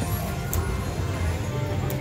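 Video slot machine (Lock It Link Diamonds) playing its game music and sound effects while the reels spin, with two short sharp clicks, about half a second in and near the end.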